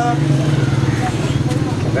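A small engine running steadily, a low, fast-pulsing hum, with faint talk over it.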